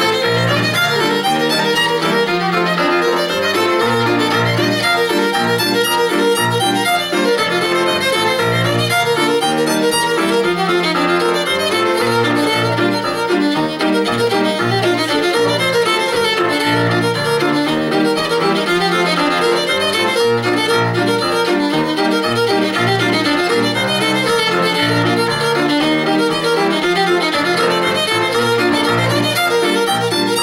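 Old-time fiddle tune played on fiddle, accompanied by a Yamaha digital piano keeping a steady, even bass-and-chord rhythm under the fiddle melody.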